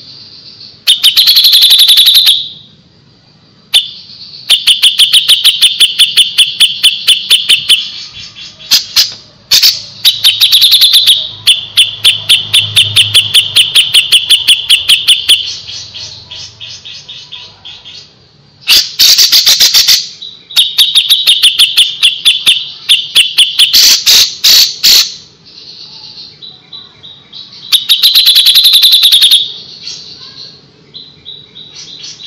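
Cucak jenggot (grey-cheeked bulbul) singing loudly and fast: long, tightly packed trains of rapid high notes, several a second, broken by a louder burst phrase about every nine seconds.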